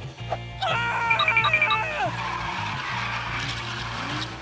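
A woman squeals and laughs over background music, followed by about two seconds of a steady hissing rush.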